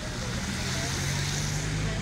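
Roadside traffic: a motor vehicle's engine running steadily with road noise, cutting off suddenly at the end.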